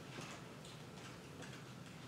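Quiet room tone with faint, light ticks.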